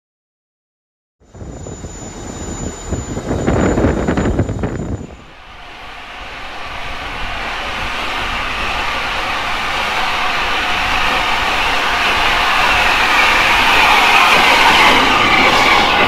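A loud rumble for about four seconds, then a three-cylinder LNER A4 Pacific steam locomotive, 60007, coming in alongside the platform, its sound growing steadily louder as it draws near.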